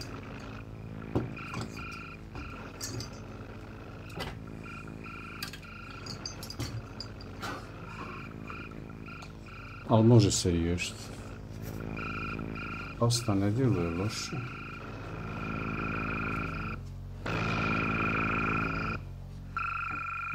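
A steady buzzing hum with a high whine runs under the whole stretch, with faint clicks and taps from hands handling a CPU cooler and a motherboard. The buzz cuts out briefly near the end and comes back louder.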